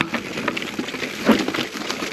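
Mountain bike descending a rough, rocky dirt trail: tyres rolling over rocks and roots with a rattle of rapid knocks from the bike, and a harder jolt just past halfway.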